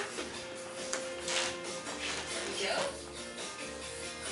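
Television audio playing in the room: background music with held notes and brief bits of voice.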